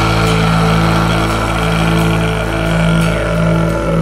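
Music from a pagan folk melodic death metal album track: a low chord held and droning steadily, with no clear drum beat.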